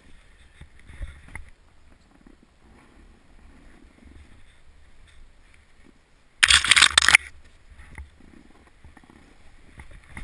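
A snowboard and gloved hands moving slowly through snow, with soft bumps and low rumble on the camera's microphone. About six and a half seconds in comes one loud scraping rush lasting under a second.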